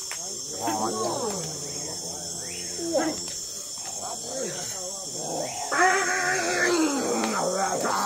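Human voices making sliding, wavering vocal calls that rise and fall in pitch, over a steady high insect chorus. The loudest is a held call that starts just before six seconds in and falls away near the end.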